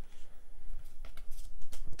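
Pokémon trading cards being handled and shifted in the hand: soft rustling with a few short clicks and flicks of card on card in the second half.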